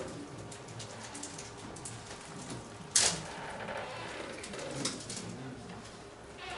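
Low room murmur with a single sharp knock about halfway through, and a few lighter clicks.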